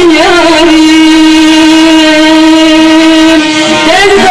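A woman's voice holding one long, steady note in Turkish folk singing into a microphone. She slides up into the note at the start and breaks off just before the end.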